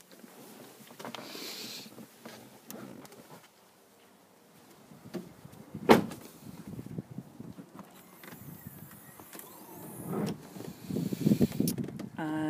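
Handling and movement noises as a person gets out of a car and moves around it, with one sharp knock from the car door about six seconds in, the loudest sound.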